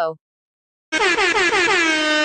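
A loud, buzzy, horn-like meme sound effect starting about a second in. Its pitch wavers at first, then settles into one steady held note.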